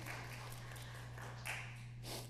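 Room tone: a steady low hum with faint scattered ticks and rustles, one a little louder about one and a half seconds in.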